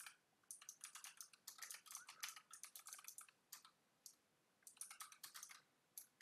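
Faint typing on a computer keyboard: quick runs of key clicks, with a pause of about a second in the middle.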